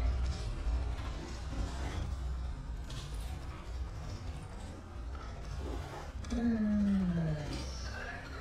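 Slowed-down audio from slow-motion footage: a deep, continuous rumble. Late on, a drawn-out, deep voice-like tone slides slowly downward.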